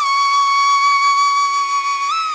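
Flute holding one long, steady high note over a faint sustained drone, in slow meditation music.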